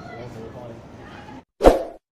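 Faint background voices and ambience that cut off abruptly about one and a half seconds in. Near the end comes a short, loud pop sound effect, the start of a subscribe-button animation.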